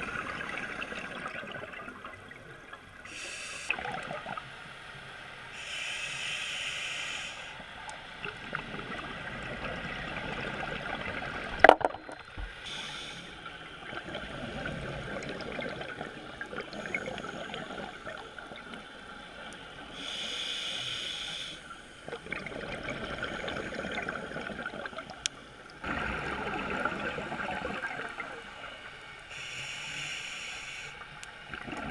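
Scuba regulator breathing underwater: bursts of bubbling exhaust every few seconds over a steady hiss. A single sharp click about twelve seconds in is the loudest sound.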